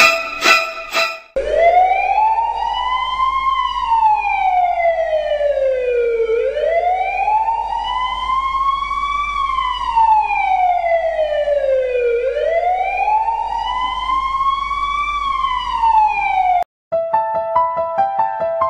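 An emergency vehicle siren wailing, rising and falling slowly three times, each rise and fall taking about six seconds, then cutting off suddenly near the end. Piano music plays briefly at the start and comes back after the siren stops.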